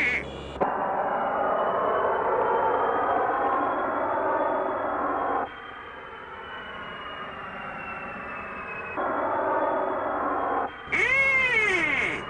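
Aircraft engine noise: a steady rushing drone with a thin high whine that slowly rises and then falls, quieter for a few seconds in the middle. Near the end come high squeaky cries that swoop up and down in pitch.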